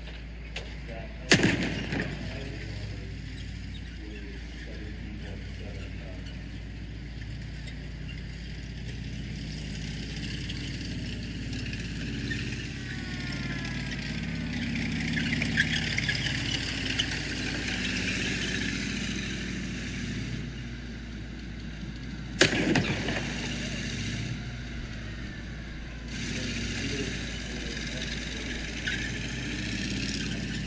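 Tanks running and driving on gravel, a steady engine and track drone all through, broken by two loud booms from blank or pyrotechnic charges, one about a second in and the other about twenty seconds later, the first followed by a cloud of white smoke around a tank.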